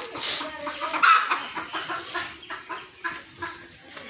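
Domestic chickens clucking in a run of short calls, the loudest about a second in.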